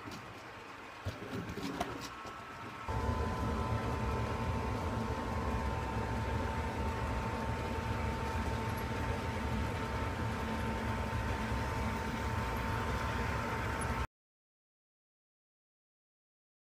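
HO scale model diesel locomotive running on the track: a steady motor whine with wheel rumble that starts about three seconds in, after a few faint handling clicks. The sound cuts off suddenly near the end.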